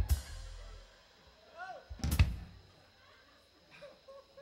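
Two drum-kit accents about two seconds apart, each a bass-drum kick with a cymbal crash; the first crash rings on for about a second and the second hit is louder. A short voiced exclamation comes just before the second hit.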